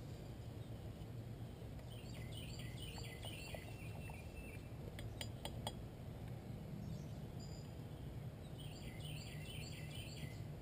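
Quiet outdoor ambience with birds singing in two spells of quick, repeated falling chirps. About halfway through comes a short cluster of light metallic clinks from a small metal pot and its wire bail handle as the pot is carried.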